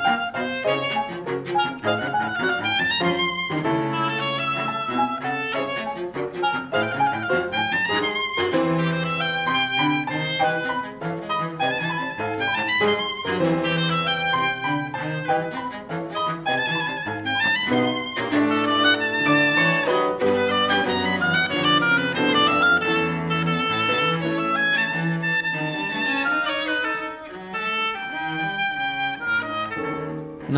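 A chamber trio of oboe, cello and piano plays a classical piece live: struck piano notes under sustained lines from the cello and oboe, with a brief softer moment near the end.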